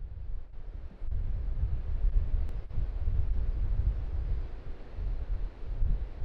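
Wind buffeting an outdoor microphone: a low, gusty rumble that swells and drops, stepping up about a second in, with a faint hiss above it.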